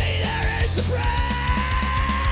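Loud punk-metal rock song: a male vocalist yells the lyrics, holding one long note from about a second in, over electric guitar and a steady drum beat.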